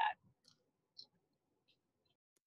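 Three faint, short clicks, about half a second apart, the clearest about a second in.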